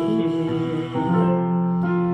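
A man's voice holding a buzzing bumblebee-style hum, a vocal warm-up sung on sustained notes over a digital piano. It steps to a new pitch about a second in.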